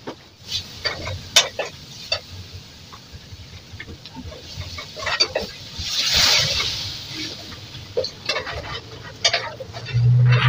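A metal spoon clicking and scraping in a steel pan as masala is stirred on a gas stove, then about six seconds in a loud sizzling hiss as liquid from a bottle is poured into the hot pan, settling back to stirring clicks.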